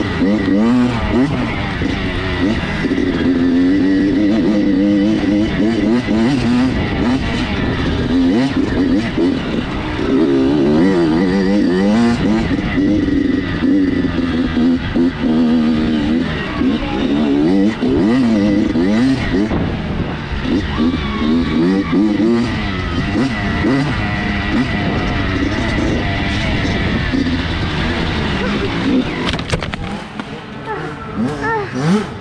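Dirt bike engine revving up and down continuously, the pitch rising and falling as the rider accelerates, shifts and backs off through the turns of a woods trail.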